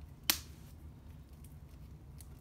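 A single sharp click about a quarter of a second in, over a low steady hum.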